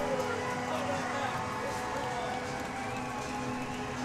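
Hockey arena crowd cheering a goal over the steady, sustained tone of the arena's goal horn.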